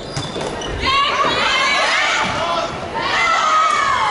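A couple of dull thuds of a volleyball being played, then from about a second in several women's voices shouting and cheering together in a large sports hall, as players celebrate a won point.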